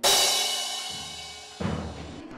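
Drum kit played with sticks: a cymbal crash at the start rings out and slowly fades, then a single drum hit comes about one and a half seconds in.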